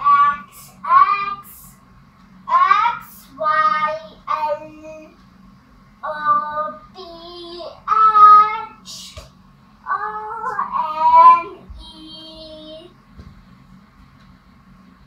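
A young girl singing in short high-pitched phrases with brief pauses between them.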